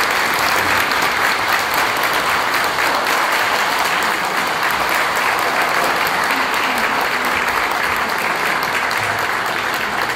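Audience applauding steadily at the end of a concert band performance.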